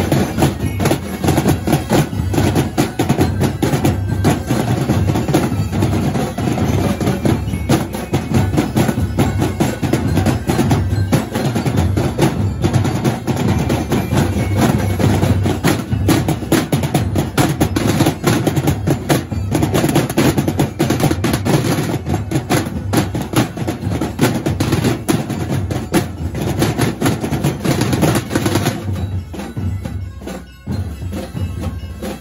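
A drum corps of marching drums, the heads struck with sticks and mallets, playing a dense, continuous beat together; the drumming thins out near the end.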